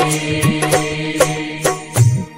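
Instrumental passage of a devotional prayer song: a steady held drone chord with a percussion beat struck about twice a second. The music stops right at the end.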